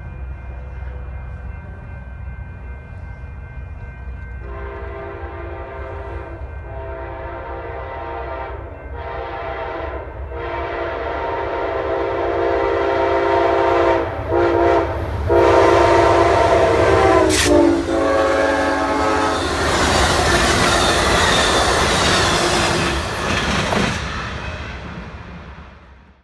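An Amtrak passenger train led by a P42DC diesel locomotive sounds its horn as it approaches: a chord of steady tones in several long blasts with short breaks, over the low rumble of the engine. After the horn stops, the locomotive and cars pass close by with a loud rush and clatter of wheels on rail, then the sound fades out.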